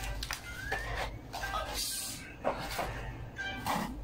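Corrugated cardboard box flaps being folded shut and pushed together, scraping and rustling in several short bursts.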